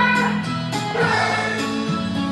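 A recorded textbook song for young English learners playing: several voices singing over an instrumental backing.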